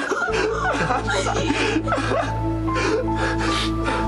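Dramatic background music of held notes over a steady low drone that comes in just after the start, with a woman's crying and gasping breaths over it.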